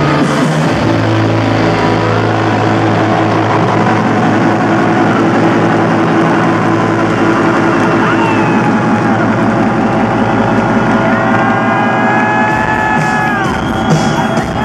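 Loud live electro-rock band music heard from the audience: a sustained low synth drone under a dense wash of guitar and electronic sound, with high sliding whistle-like tones near the end.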